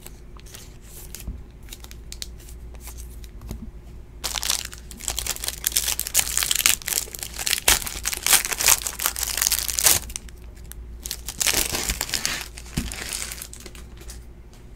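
Clear plastic trading-card pack wrapper being torn open and crinkled in the hands. The crackling starts about four seconds in and runs for about six seconds, then comes again in a shorter burst near the end.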